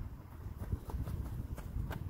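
Footsteps of a person running in trainers on an artificial-turf pitch: a quick series of footfalls, about three a second.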